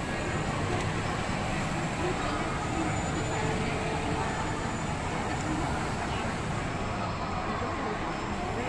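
Shopping-mall ambience: a steady hum of background noise with indistinct chatter from people nearby.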